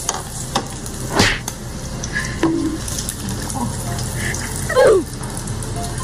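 An egg frying in hot oil in a nonstick frying pan with a steady sizzle, and a spatula scraping the pan about a second in. Near the end comes a brief, loud falling voice sound. The egg is already burning in the very hot pan.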